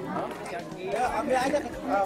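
Only speech: several people talking at once, a background chatter of overlapping voices.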